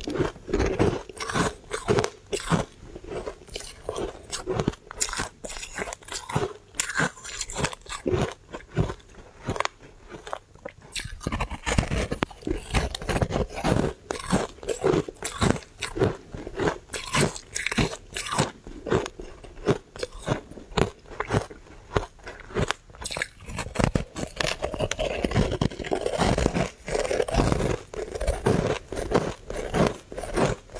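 Crunching and chewing of refrozen shaved ice coated in matcha powder, heard close to the microphone: a continuous run of crisp crunches, a few a second, as the ice is bitten and chewed.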